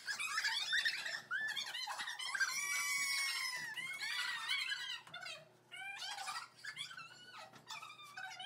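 High-pitched excited squeals and shrieks from a group of girls in a small room, overlapping through the first half and thinning out into shorter, quieter cries after about five seconds.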